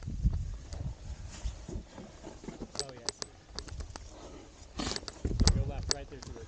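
Wind buffeting the microphone in a low rumble, with sharp clicks and scrapes of hands, boots and gear on rock as a climber scrambles over boulders.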